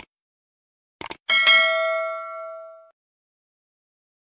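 Subscribe-button sound effect: two quick mouse clicks about a second in, then a bright bell ding that rings on and fades out by about three seconds in.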